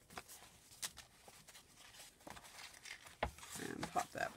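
Soft paper rustling with a few light taps as kraft cardstock journal pages are handled and a postcard is slid into a pocket.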